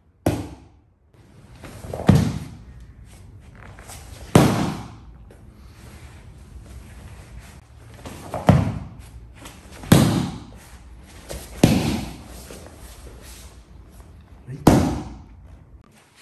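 Heavy thuds of bodies and hands hitting tatami mats as aikido pins and falls are worked: seven separate impacts spaced one to four seconds apart, each echoing briefly in a large hall.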